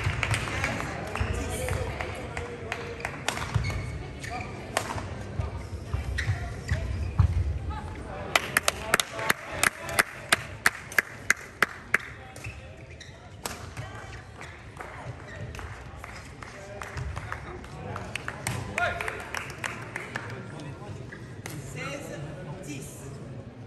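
Badminton rally in a sports hall: sharp racket hits on the shuttlecock and players' footfalls on the court, with voices around. About eight seconds in comes a quick, even run of about a dozen sharp strikes lasting some four seconds, after which the court goes quieter.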